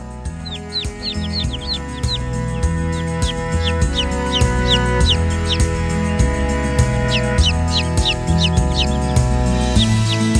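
Background music swelling in, with newly hatched chicks peeping over it in quick, short, falling cheeps, several a second.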